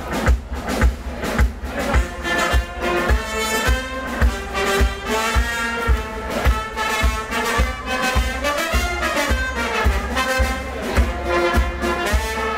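Live brass band playing a tune, with saxophone, trumpet and trombone over a steady drum beat of about two thumps a second.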